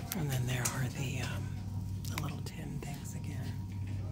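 Indistinct voices talking, too faint or muffled to make out, over a steady low hum.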